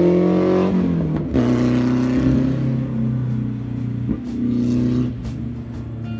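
Spec Racer Ford's 1.9-litre four-cylinder engine revving under acceleration, its pitch rising and then dropping about a second in at a gear change, then holding steadier with a couple of small pitch shifts and easing off near the end.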